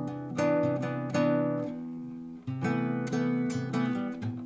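Nylon-string classical guitar sounding two related chords, a C6 with a major seventh and a C6 with a ninth, for comparison. The first chord is struck twice and left to ring; a different chord comes in about two and a half seconds in and is struck again soon after.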